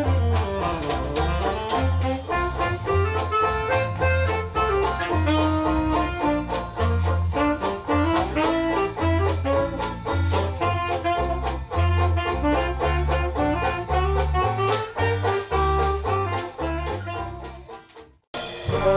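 A live hot jazz band playing an instrumental swing number: clarinet, saxophone and brass over a rhythm section with a steady bass beat. The music fades down near the end.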